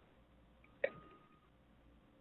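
Near silence broken by one brief, sharp sound a little under a second in.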